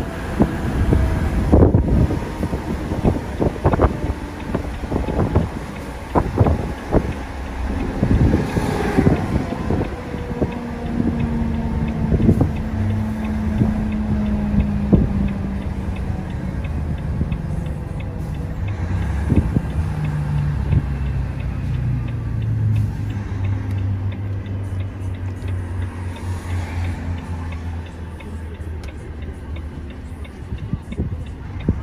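Heavy truck's diesel engine heard from inside the cab while driving, with many short rattles and knocks from the cab over the first several seconds. From about ten seconds in, the engine note drops in steps as the truck slows down, settling into a low, steady run near the end.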